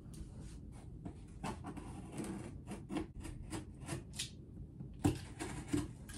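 Knife point scratching a circle into cardboard: a run of short, uneven scraping strokes, then a couple of light knocks near the end.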